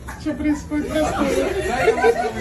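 Indistinct chatter: several voices talking over one another, no words clear.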